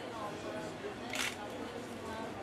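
Voices murmuring in a room, with one short, sharp click-like noise about a second in.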